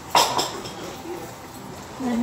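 A brief clatter of several quick knocks just after the start, then low background room noise.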